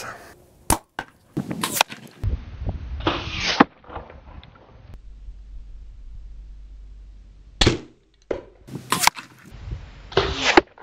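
Compound bow (APA Mamba 34) being handled and shot: a few light clicks and rustling, then one loud sharp crack of the string release about three-quarters of the way in, followed a second later by a few more sharp knocks.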